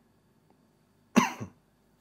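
Near silence, then about a second in a man makes one short vocal sound, a cough-like burst falling in pitch.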